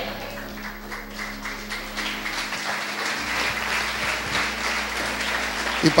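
A congregation applauding, an even run of many hands clapping over a faint steady low hum.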